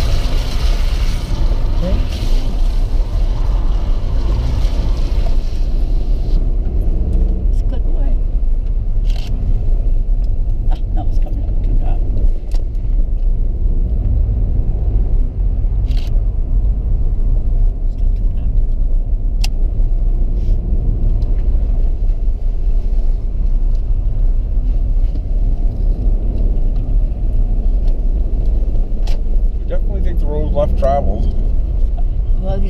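Steady low rumble of a car driving, heard from inside the cabin. A hiss rides over it for about the first six seconds and then stops sharply, and a few sharp clicks come later.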